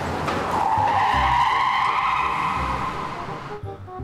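Car tyres squealing: one sustained screech lasting about three seconds that cuts off suddenly, over background music.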